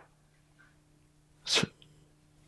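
A pause with near silence, then about one and a half seconds in a single short, sharp burst of breath from the man into his headset microphone.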